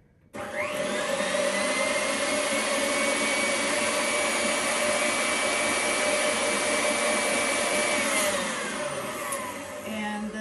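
Electric stand mixer whipping aquafaba with cream of tartar: the motor spins up quickly at high speed, runs steadily, then slows and winds down near the end.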